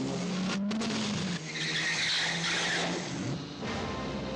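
Car engine running at high revs, its pitch gliding and then holding steady. A tyre squeal of about a second comes in about a second and a half in, as the car takes a turn.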